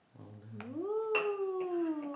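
One long drawn-out vocal "ooooh" that rises in pitch, then slowly falls, held for about two seconds. A sharp click of a knife against the cake board or plate comes about a second in.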